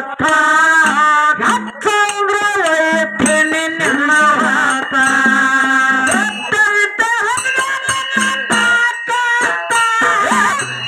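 A woman singing a North Karnataka folk song into a microphone, with harmonium and percussion accompaniment.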